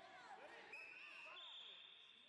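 Faint shouting voices in a large hall. A steady high tone starts a little before halfway through, then steps up to a higher pitch and holds, like a signal sounding as the referee moves in to stop the fighters.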